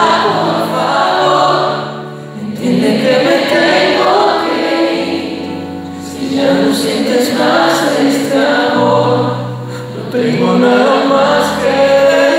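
Live pop ballad: male voices singing in phrases of about four seconds over guitar, keyboard and bass.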